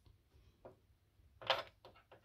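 Small plastic toy pieces being handled: a faint tap and then a louder knock about one and a half seconds in, as a toy figure is set down.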